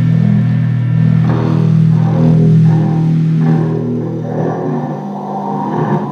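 Live band's electric guitar and bass guitar holding a sustained, droning chord at the end of a song, with upper notes shifting over it. It thins out and fades over the last couple of seconds.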